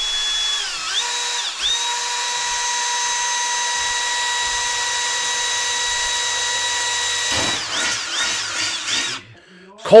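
Milwaukee cordless drill with a 5/32-inch cobalt bit drilling through a metal electrical panel cover: a steady motor whine that dips in pitch twice in the first two seconds as the bit bites. It then holds steady, wavers near the end and stops about nine seconds in.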